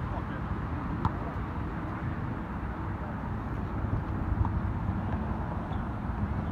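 Steady low outdoor background rumble with faint voices, and two light knocks, one about a second in and one past four seconds.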